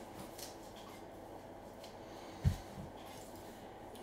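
Quiet room with a few faint clicks and one short, dull thump about two and a half seconds in.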